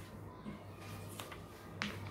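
Faint wiping of a duster across a whiteboard, with two short sharp clicks about a second in and near the end, over a steady low hum.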